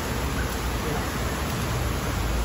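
Steady outdoor background noise: an even rushing hiss with a low rumble underneath, with no distinct events.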